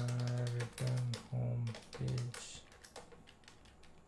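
Typing on a computer keyboard, a run of quick key clicks. A man's low voice sounds in four short stretches over the first two seconds, louder than the keys.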